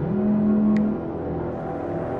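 A smartphone vibrating for an incoming call: one buzz of just under a second, rising in pitch as it starts, over a low, steady music drone, with a brief tick partway through.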